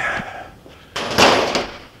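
A single sudden metallic clatter about a second in, fading over about half a second, as a hand-held valve spring compressor tool is set down and put away.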